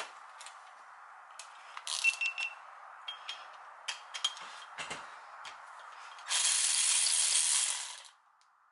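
Milwaukee 3/8-inch cordless ratchet running ring gear bolts on a differential carrier. It runs briefly about two seconds in, then makes scattered clicks and taps, then gives one longer, louder run of about a second and a half near the end.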